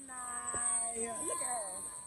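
A young child's voice making long, drawn-out, wavering sounds, quiet and with a sliding pitch.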